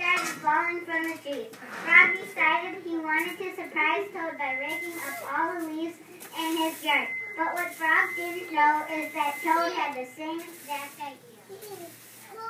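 A child's voice speaking almost without pause, with a thin, steady high whine coming and going behind it, the squeak of the room's loudspeaker.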